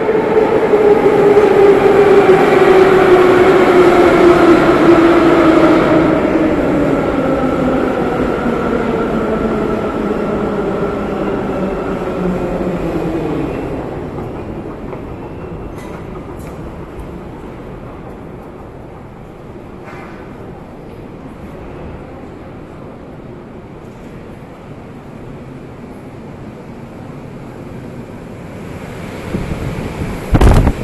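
Metro train's motors whining, the pitch falling steadily over about twelve seconds as the train slows, loudest at the start. After that only a quieter, steady hum remains.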